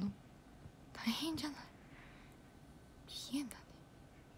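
A young woman whispering softly close to a phone microphone: two short breathy utterances, one about a second in and a briefer one near the end.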